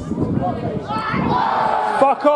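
Small football crowd and players shouting all at once as a hard tackle goes in and a player goes down, with one long held shout near the end.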